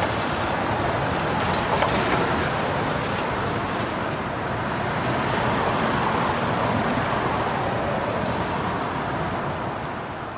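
Steady city street traffic noise: the continuous sound of passing cars and engines.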